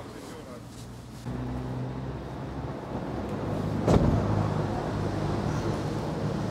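A motor vehicle engine idling steadily, coming in suddenly about a second in, with one sharp knock about four seconds in.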